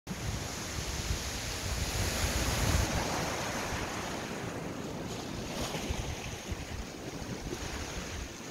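Sea surf washing over shore rocks, with wind buffeting the microphone. The low rumble is heaviest in the first three seconds.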